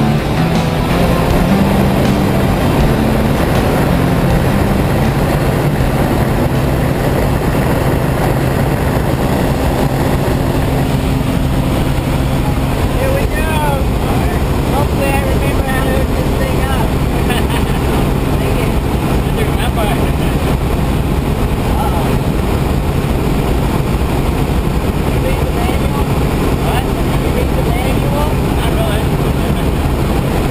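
Steady drone of a small jump plane's engine and propeller heard inside the cabin, with voices calling out over it partway through. Music fades out in the first couple of seconds.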